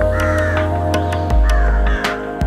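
A crow cawing twice over background music with a steady low drone.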